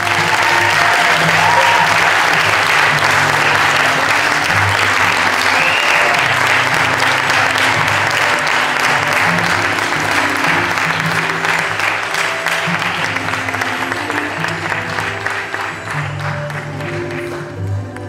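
Theater audience applauding loudly over recorded string music. The clapping breaks out suddenly at the start and slowly eases off toward the end, while low sustained string notes carry on underneath.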